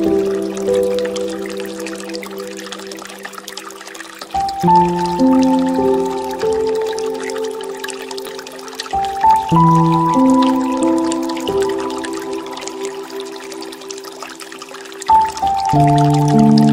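Slow, soft piano music. A new chord sounds about every five seconds and fades away, over the steady trickle of a bamboo water fountain.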